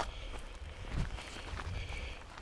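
Footsteps of hiking shoes on a wet dirt-and-gravel mountain trail, a few soft steps in walking rhythm.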